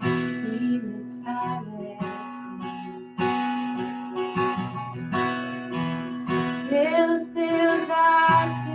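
A woman singing a worship song while strumming an acoustic guitar.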